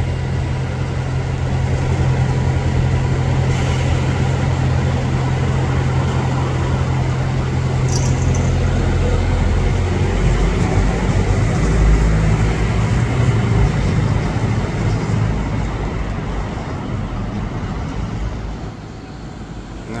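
City street traffic, led by a nearby double-decker bus's engine running with a steady low hum; about nine or ten seconds in its note breaks into a changing, rougher rumble.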